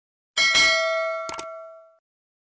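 End-card sound effect: a bright metallic ding struck once, ringing on and fading away over about a second and a half, with two quick clicks close together about halfway through.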